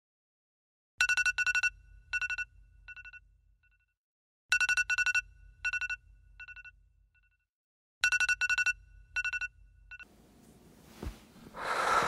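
iPhone alarm ringing: three rounds of quick high beeps, each round fading away, about three and a half seconds apart. It stops abruptly about ten seconds in, as the alarm is switched off, and a soft rising noise follows near the end.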